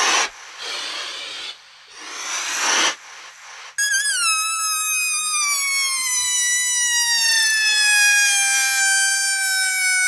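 A techno track breakdown with no beat. Whooshing noise swells rise and cut off, like breaths blowing up a balloon. Then, about four seconds in, a sudden high squeal begins and slowly falls in pitch, like air escaping a balloon's stretched neck.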